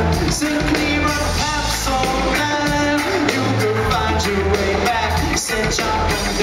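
Live reggae band music: a male vocalist singing over keyboards, a steady bass line and drums.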